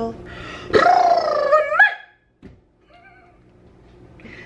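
A pet animal vocalizing: one long high call, rising at the end, about a second long, then a short faint call about three seconds in.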